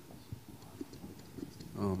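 Handheld microphone being lifted and handled: a few faint, scattered knocks and taps. Near the end a man starts to say "Oh man".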